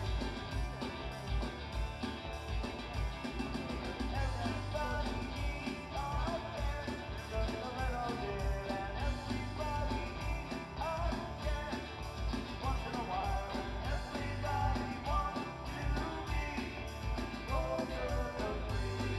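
Live rock band playing a song: an electric bass over a steady beat, with a man singing lead.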